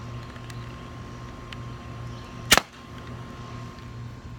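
An airsoft Smith & Wesson M&P40 pistol firing a single BB, a sharp pop about two and a half seconds in.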